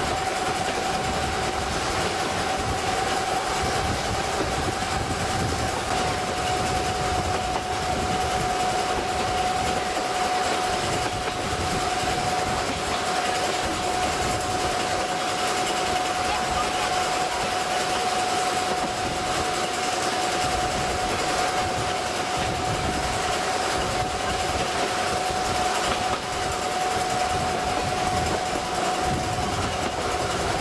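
Narrow-gauge train hauled by an Mk45 diesel locomotive, heard from an open coach: a steady running noise of engine, wheels and track, with a steady whine throughout.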